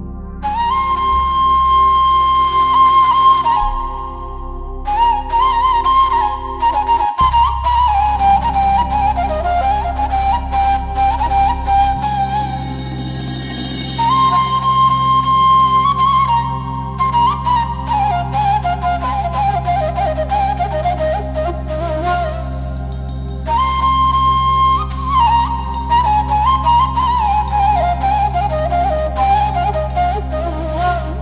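A solo wind instrument with a flute-like sound plays a free-rhythm, heavily ornamented melody in several descending phrases over a steady, sustained keyboard drone. This is the instrumental opening of a bozlak, a Turkish long-form free-rhythm folk song (uzun hava).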